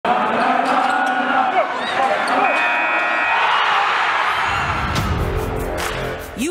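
Produced sports intro sound: arena crowd noise under a game-clock countdown, with a steady horn-like tone held for about a second partway through, then a low rumble swelling into a hit near the end.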